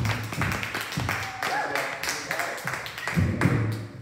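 A small audience clapping. The claps are quick and thin out near the end, with music and voices underneath.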